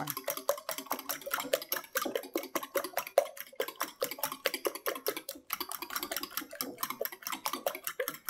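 A fork beating raw eggs in a glass mixing bowl: rapid, even clicks of the tines against the glass, several a second.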